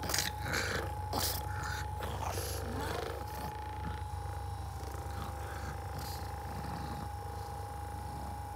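Percussion massage gun running with a steady motor whine, its head pressed against a pug's face. Over the first three seconds or so the pug grunts and snorts in short irregular bursts, then only the gun is heard.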